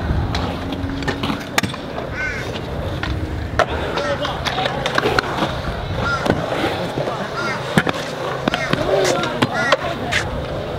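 Stunt scooter wheels rolling over the concrete of a skatepark bowl, with several sharp clacks of scooters hitting the concrete.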